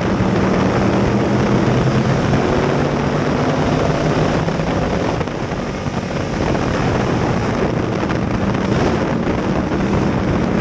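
Dirt-track street stock race car's engine running hard at racing speed, heard from inside the cockpit. The engine note dips briefly about halfway, then picks back up.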